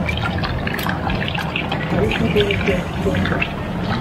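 Handfuls of wet, fermented coffee beans in parchment being scooped out of a fermentation tank. Water drips and trickles back into the tank, and the beans make small gritty clicks as they rub together in the hands.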